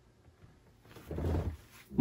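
Near silence, then a person's short breathy exhale, like a sigh, about a second in.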